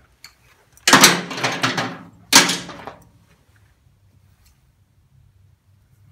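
Metal tire chains clattering and jingling as they are lifted and dropped: one burst of rattling about a second in, a shorter second crash about a second later.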